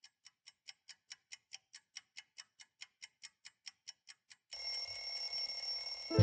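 Alarm clock ticking fast, about five ticks a second and growing louder, then ringing steadily from about four and a half seconds in.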